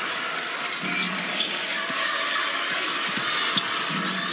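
Crowd noise in an arena, with a basketball being dribbled on a hardwood court: a few sharp bounces over a steady background hubbub.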